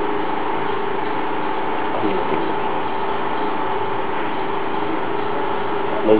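A steady mechanical hum with two faint steady tones, unchanging in level, with a small brief sound about two seconds in.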